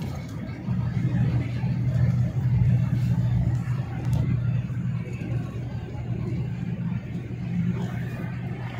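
Car engine and road noise heard from inside the cabin while driving: a steady low rumble that grows louder about a second in and eases off a little after the middle.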